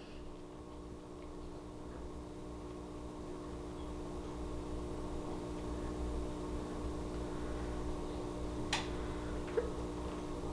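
Quiet room tone: a steady low hum that grows slightly louder, with a single sharp click near the end.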